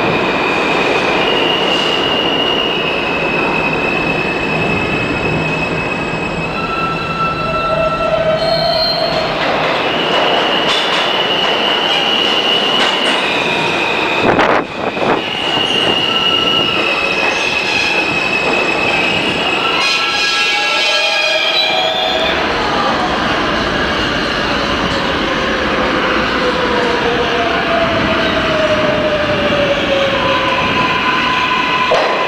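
New York City subway trains running through a station: the rumble of the cars with high, steady wheel squeal held for seconds at a time. From about two-thirds of the way in, a whine falls slowly in pitch as an arriving train slows.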